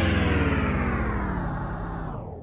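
Electronic outro sting: a sustained synthesizer tone with many overtones, sliding slowly down in pitch and gradually fading.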